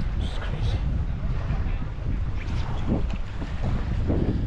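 Strong wind buffeting the camera microphone, a steady low rumble.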